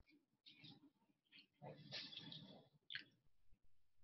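Near silence on a webinar audio feed: faint, indistinct low sounds and one short click about three seconds in.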